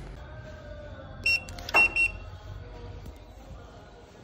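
Electronic attendance machine beeping three short, high-pitched times in quick succession, with a click on the second beep.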